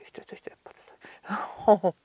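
Speech only: a woman's voice speaking low and half-whispered, becoming louder and fully voiced about three quarters of the way through.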